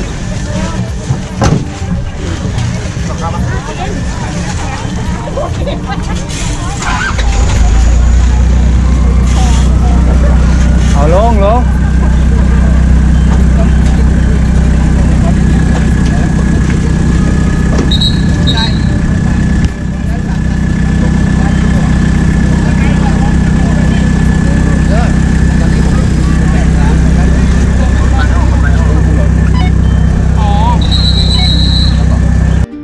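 Toyota Hilux pickup truck: a few knocks in the first seconds as the driver gets in, then from about seven seconds in the truck's engine and drive noise rise to a loud, steady low rumble that holds on.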